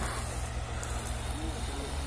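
Steady low hum under faint outdoor background noise, its pitch shifting slightly near the end.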